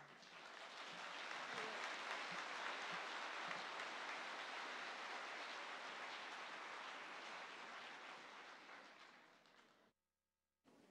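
A large audience applauding, building up over the first second or two, holding steady, then dying away near the end.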